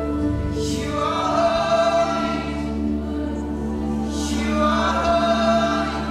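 Live worship music: a group of voices sings long, held notes together over a band with acoustic guitar and keyboard. Two swells of high hiss rise through the music, one about a second in and one about four seconds in.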